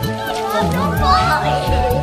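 Music with a steady beat and held tones, with children's voices calling out over it about a second in.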